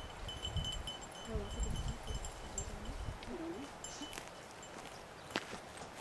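Small bell on a search dog's collar tinkling faintly on and off as the dog moves, with a low wind rumble on the microphone in the first couple of seconds.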